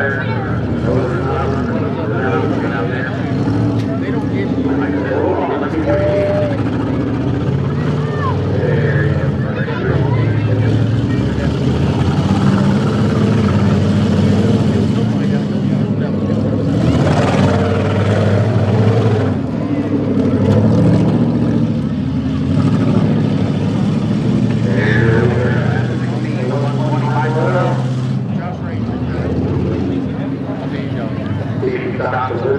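Several demolition derby cars' engines running and revving in the arena, with voices mixed in.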